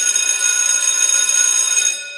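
An alarm bell ringing steadily on its own, a high ring with no bass, in place of the music, which cuts off just as it starts. The ringing fades out near the end.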